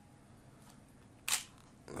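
Nikon D90 DSLR's mirror and shutter mechanism giving one short, sharp mechanical clack about a second and a quarter in, against a quiet room.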